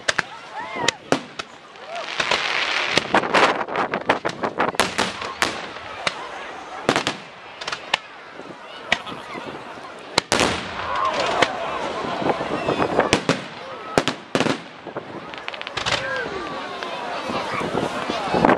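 Fireworks display: a rapid, irregular string of sharp bangs and crackles from rising comets and bursting shells, thickest about two seconds in and again about ten seconds in.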